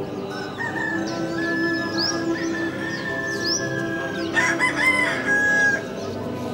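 A rooster crows once, loudly, about four and a half seconds in, over background music.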